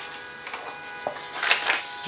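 Scrapbook paper being folded along scored lines and pressed flat by hand: soft rustling, with a few short crisp crackles in the second half. Faint background music plays underneath.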